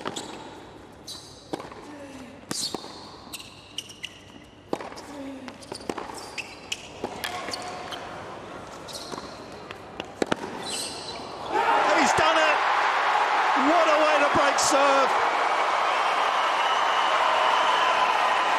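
Tennis rally on a hard court: sharp racket-on-ball strikes and court sounds echo in an arena. About eleven and a half seconds in, the crowd breaks into loud, sustained cheering with shouts and whistles as the break point is won.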